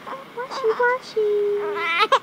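Two-week-old newborn baby fussing at a sponge bath: a few short, high cries, then a longer held cry from about a second in that rises into full crying near the end.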